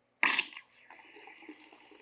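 Garden-hose water flushing through an airless paint sprayer's pump and out of its drain tube into a bucket: a sudden loud gush about a quarter second in, then a steady, quieter flow. The water is flushing leftover primer out of the pump.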